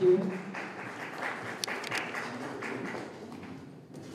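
A small group of people applauding, the clapping thinning out and fading away over the few seconds.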